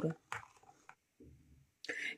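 Faint stirring of a thin batter with a metal spoon in a glass bowl, mostly very quiet, with one light tap about a third of a second in.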